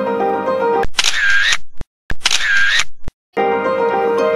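Instrumental background music with steady sustained notes. Twice near the middle it gives way to the same noisy sound effect, about a second long each time, and each effect is followed by a brief dead silence before the music comes back.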